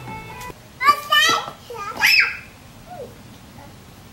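A young child's high-pitched, wordless vocalising: a quick run of short squeals about a second in and one more rising-then-falling squeal at about two seconds. Background music with steady tones cuts off half a second in.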